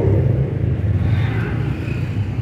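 Low, steady rumble of a motor vehicle engine running close by.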